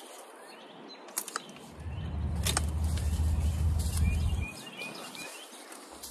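Bypass loppers snipping through dry hydrangea canes, two sharp snaps a little over a second apart. A low rumble sets in with the second snap and lasts about three seconds. A few short bird chirps come near the end.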